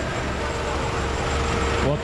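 A steady low engine rumble from site machinery such as the truck-mounted aerial work platforms, with a steady mid-pitched whine joining about half a second in. A voice cuts in at the very end.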